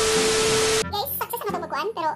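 Television static sound effect: a loud hiss of white noise with a steady low beep under it, lasting just under a second and cutting off sharply, then a voice talking.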